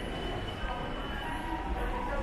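Shopping-mall indoor ambience: a steady low rumble with faint, indistinct voices in the background.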